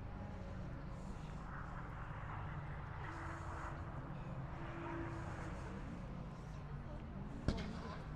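Outdoor car-show ambience: distant voices and a steady low rumble, with one sharp click about seven and a half seconds in.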